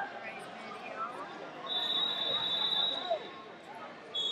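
A referee's whistle blown in one long, steady, high-pitched blast of about a second and a half, starting near the middle, over background voices and chatter.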